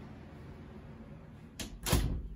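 Interior panel door with a round knob being pulled shut: a light click about a second and a half in, then a louder thump as it meets the frame and latches near the end.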